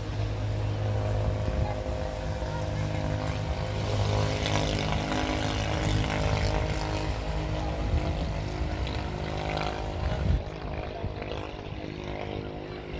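A steady low mechanical hum, a stack of even tones like an engine or motor running, goes on throughout, with a single sharp thump a little after ten seconds.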